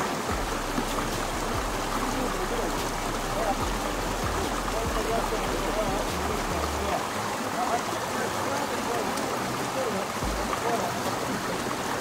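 Shallow stream running over rocks, a steady rush of water, with faint voices of men talking in the background.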